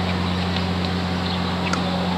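A steady low hum that does not change, with a few faint, short, high chirps over it.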